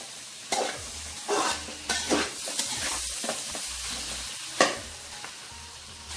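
Chicken kothu parotta frying in a large aluminium pan, sizzling as a metal spoon stirs and scrapes through it. There are several short scraping strokes and a sharp knock of the spoon on the pan about four and a half seconds in.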